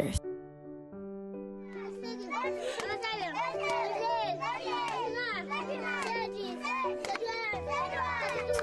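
Background music with slow, held notes, and from about two seconds in, many children's voices chattering and calling out over it.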